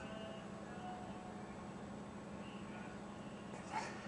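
Quiet room tone with a steady low electrical hum, and a brief hissing burst near the end.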